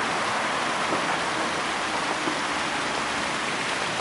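Steady rushing and splashing of water falling in a stone fountain.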